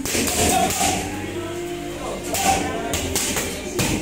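Gloved punches smacking into focus mitts during boxing pad work: several sharp hits, the loudest about halfway through.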